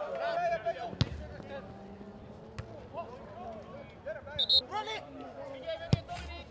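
Football players shouting on an open pitch, with the sharp thud of a ball being kicked about a second in and again just before the end.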